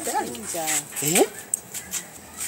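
A man's voice making wordless exclamations, its pitch sliding up and down, with a sharply rising cry a little over a second in.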